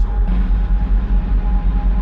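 A loud, steady low rumble under a sustained droning tone.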